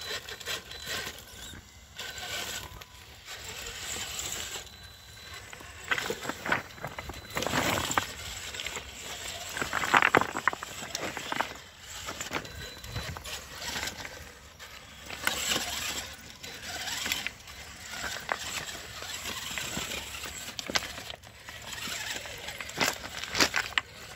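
Traxxas TRX-4 RC rock crawler driving over loose rocks: short spurts of electric motor and gear whine, with tyres and body scraping and clattering on stone.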